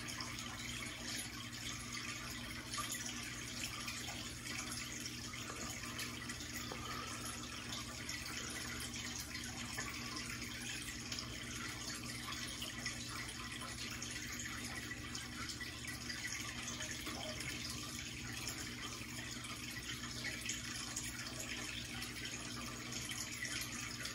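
Aquarium water trickling and dripping steadily, with a faint steady hum beneath it.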